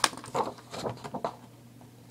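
A sharp tap on the table at the very start, then several short scuffs and rustles of a sheet of drawing paper being picked up and handled.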